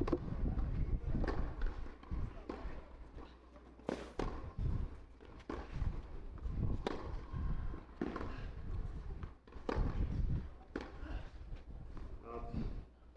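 Tennis rally on a clay court: a racket strikes the ball about every second and a half, the hits alternating between the two ends, over a murmur of background voices.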